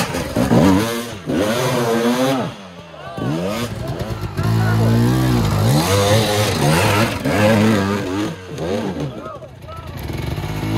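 Enduro dirt bikes revving hard in bursts as they claw up a muddy, rutted climb, one passing close at first and others coming up behind. The engine pitch rises and falls with each blip of the throttle, with quieter lulls about three seconds in and near the end.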